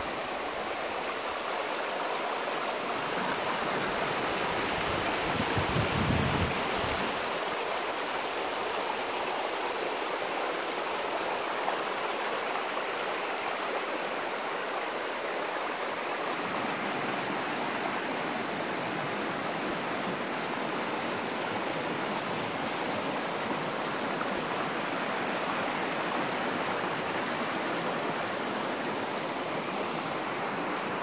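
Fast, shallow mountain stream rushing over rocks: a steady, unbroken rush of water. A brief low rumble rises over it about six seconds in.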